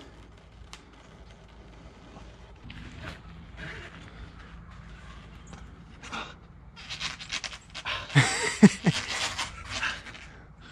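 A man breathing hard under strain during a slow bar exercise. Loud, noisy exhales come in quick bursts from about six seconds in, with a short strained grunt near the end.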